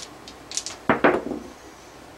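A pair of dice rattled briefly in the hand, then thrown onto a felt craps table, landing with a sharp clack about a second in and tumbling briefly before settling.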